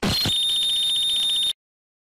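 Edited-in dramatic sound effect: a brief low hit, then a shrill, steady alarm-like beep with a fast buzzing flutter that cuts off suddenly after about a second and a half, then dead silence.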